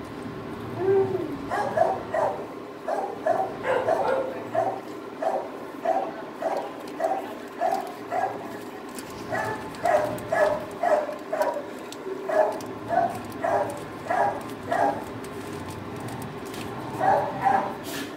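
A dog barking over and over in a kennel block, short sharp barks about two a second in long runs with brief pauses, then a few more near the end.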